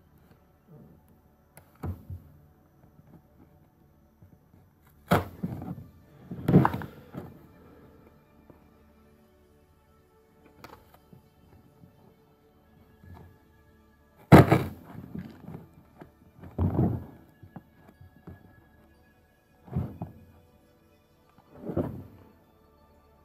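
Cardboard product box being handled and pried open on a table: a series of about seven knocks and rustling scrapes, the loudest about two-thirds of the way through, as the box is gripped, turned and pulled at.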